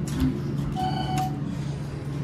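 Elevator car push button on a GAL JetPlus fixture pressed with a soft thump, then a single short electronic beep from the button about three-quarters of a second in. A steady low hum runs underneath.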